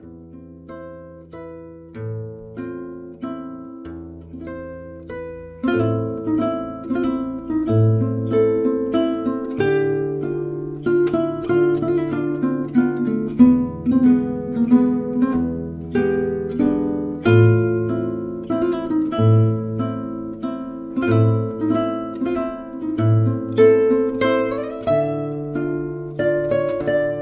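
Instrumental background music of quick plucked-string notes over held bass tones. It starts softly and fills out about six seconds in.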